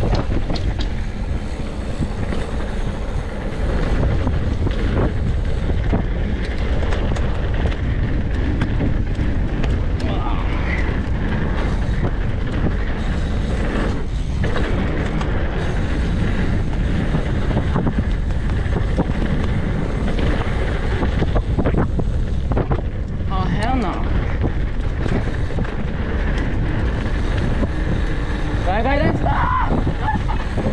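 Mountain bike riding fast over a dirt trail: wind buffeting the microphone over the steady rumble and rattle of the tyres and bike on the rough ground, with a few short high-pitched sounds near the middle and end.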